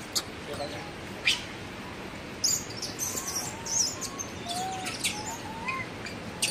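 A cluster of short, high chirping calls about two and a half seconds in, with fainter warbling calls lower in pitch and two sharp clicks in the first second and a half.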